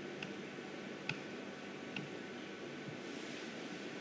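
Faint room tone with a low steady hum, broken by three short clicks spaced a little under a second apart: laptop clicks as PDF slides are paged forward.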